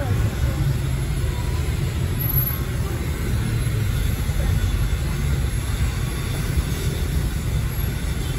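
Steady low rumble of street traffic passing along the road.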